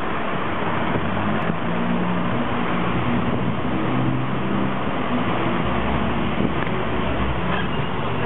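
Steady street traffic noise, with the low hum of a vehicle engine running close by.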